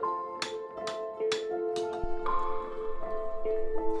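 Hand hammer striking a silver sheet over a metal stake as it is raised into a vessel, about two or three blows a second, with each blow ringing briefly. The blows stop about halfway through. Mallet-percussion music plays underneath.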